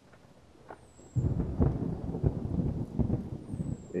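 Thunder that sets in suddenly about a second in and rolls on as a deep rumble with repeated cracks, the sound of a storm breaking.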